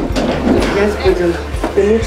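People talking, with no other sound standing out.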